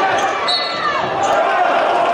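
A basketball being dribbled on a hardwood court amid the steady noise of a crowd in a gym.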